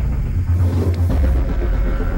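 A loud, steady, deep rumbling drone of trailer sound design, with almost all of its weight in the lowest bass.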